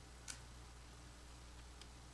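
Near silence over a low steady hum, with a short sharp click about a third of a second in and a fainter one near the end, as a plastic water bottle is picked up and its cap twisted open.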